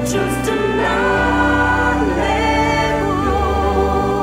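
Christian worship song with a choir of voices singing long held notes over a sustained accompaniment; the bass changes note about a second in and again near the end.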